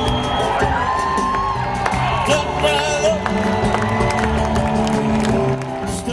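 A live band plays an instrumental passage without vocals: held and sliding instrument lines over drums and cymbals, with scattered whoops from the crowd.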